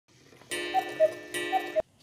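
A cuckoo clock's bellows-and-pipe call, a two-note 'cuck-oo' with the second note lower, sounded twice and cut off sharply near the end.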